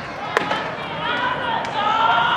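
A baseball pitch smacking into the catcher's mitt: one sharp pop less than half a second in.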